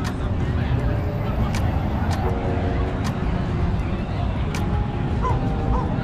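Busy outdoor crowd ambience: many people's voices chattering at a distance over a steady low rumble, with a few short high yelps near the end.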